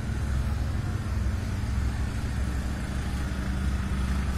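A steady low hum from a machine or electrical source, unbroken and unchanging, over faint background hiss.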